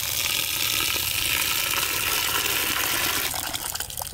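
Water poured in a steady stream into a pot of chopped tender bamboo shoots, filling it so the pieces can soak. The pouring dies down a little after three seconds in.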